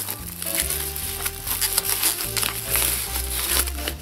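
Thin paper wrapping crinkling as a compact camera is unwrapped from it by hand, over background music.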